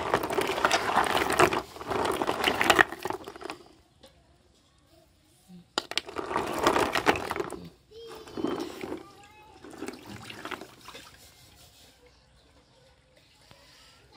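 Water sloshing and splashing in a plastic basin as a hand washes a mass of giant African land snails, in two bursts: one over the first three and a half seconds and another from about six to eight seconds in, with quieter lapping after.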